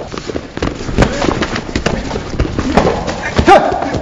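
Sparring on a padded gym mat: scattered thuds and scuffs of feet and gloves. A short shout comes about three and a half seconds in.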